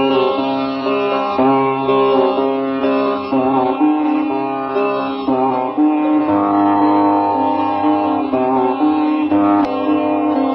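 Indian meditation music: a sitar playing a slow melody of plucked and gliding notes over a low steady drone.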